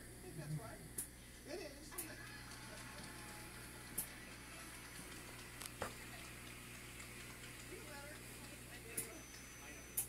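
Television game-show sound heard faintly across a room: indistinct voices and some music, with a handful of sharp clicks scattered through it.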